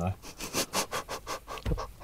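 Breathy laughter: a quick run of short exhaled pulses, with a low thump near the end.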